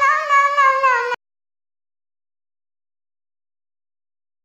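A cat's drawn-out meow, wavering in pitch, cut off abruptly about a second in.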